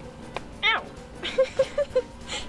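A small thrown ball strikes with a light click, followed about a quarter second later by a girl's high yelp of "Ow!" and a short burst of giggling.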